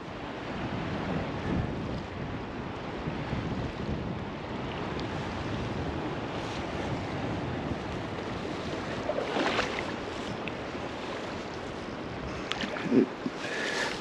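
Steady rush of a shallow river's flowing water mixed with wind buffeting the microphone, with a couple of brief louder sounds about nine and thirteen seconds in.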